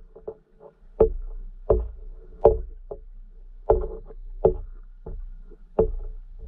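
Irregular sharp clicks and knocks picked up underwater, about a dozen, the loudest coming roughly every three quarters of a second over a faint low hum.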